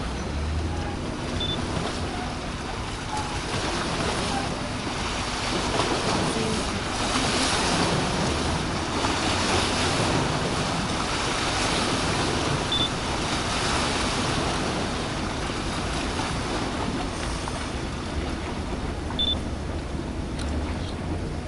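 Outdoor waterside noise of wind and moving water, an even rushing that swells in the middle and eases again, over a faint steady low hum.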